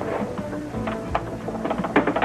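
Background music: held notes with short, sharp percussive hits scattered through it.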